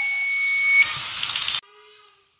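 Buzzer alarm of a solar power management controller sounding one steady, loud, high-pitched tone that cuts off sharply under a second in. It signals an over-current fault that has tripped the load line. A brief noisy crackle follows before it goes quiet.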